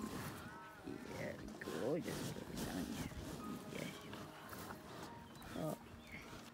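British Blue cattle at close range, sniffing and breathing around the microphone, with a few short pitched vocal sounds in between.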